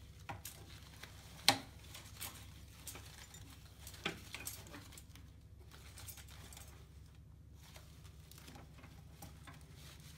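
Artificial leaf stems being handled and set into an arrangement: soft rustling with scattered light taps, and a sharp click about a second and a half in and another about four seconds in.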